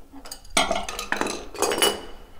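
Porcelain bidet being wrestled loose, clattering and scraping against the floor and fittings with a hard, ringing clink, in two rough bursts: one about half a second in, and a shorter one near the end.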